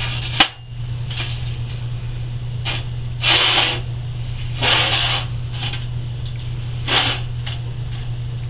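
Steel plates being handled, flipped and slid on a steel welding table: a sharp clack about half a second in, then several short scraping rubs of metal on metal, over a steady low hum.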